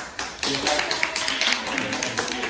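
A roomful of people clapping: a few separate claps, thickening into applause about half a second in.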